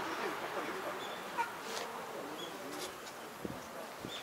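Background murmur of people talking at a distance, with a few short high chirps and faint clicks over it.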